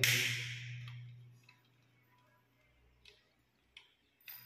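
A short hiss that fades within the first second, then a few faint, sparse clicks of a small screwdriver on the terminal screws of a modular switch board as the wires are tightened.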